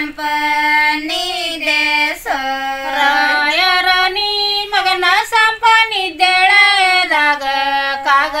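Women singing a Kannada sobane folk wedding song unaccompanied, in long held, gliding phrases with brief breaths between them.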